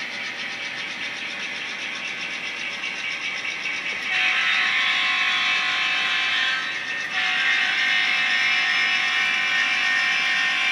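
Diesel engine sound played by a sound-equipped N-scale model locomotive's small speaker as the train runs. It grows louder and fuller in two long stretches from about four seconds in, with a brief dip near seven seconds.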